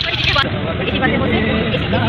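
People talking over the steady noise of road traffic and buses.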